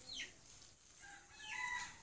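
Faint clucking of a domestic chicken: short falling chirps about the start and a brief call near the end.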